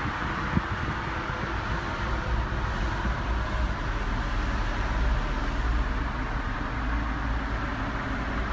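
Steady low rumble and rushing air inside a Toyota Camry's cabin, typical of the car idling with the climate fan blowing. A single short click about half a second in.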